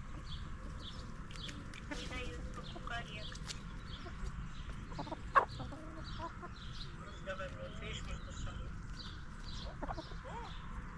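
A flock of brown hens clucking as they forage, with many short calls throughout. One sudden, much louder sound comes about five seconds in.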